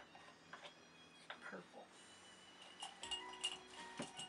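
Light clicks of small plastic paint pots and brushes handled on a tabletop, with a quick run of sharper clinks near the end that ring briefly, as brushes knock against a glass jar.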